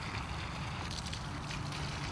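Water running steadily from an open garden hose into the soil of potted houseplants, flushing the soil to leach out built-up soluble salts.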